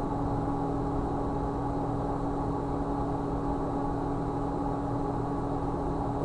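Steady background hum of the room and recording setup, with a few faint fixed tones running under it. Nothing else happens.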